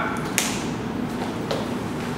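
Steady room noise with a sharp tap about half a second in and a softer tap about a second and a half in.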